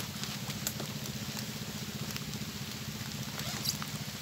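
Rain pattering steadily, with many small drop taps, over a low steady hum.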